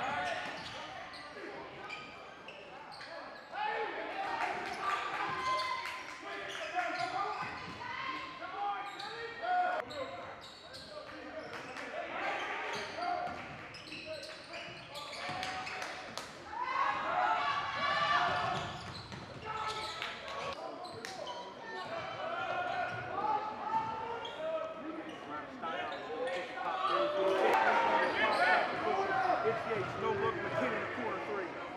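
Live basketball game sound in a large gym: a basketball bouncing on the hardwood court, with indistinct voices from players and crowd carrying through the hall.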